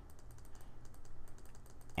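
Faint, rapid clicking of computer keyboard keys: a quick run of key presses with a steady low hum underneath.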